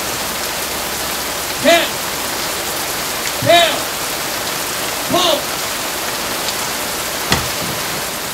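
Heavy rain pouring steadily onto wet ground. Three short shouted calls cut through it about two seconds apart, and a single sharp knock comes near the end.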